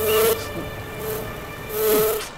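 A housefly buzzing close by, swelling twice with a rush of air, once at the start and again near the end, as it darts past.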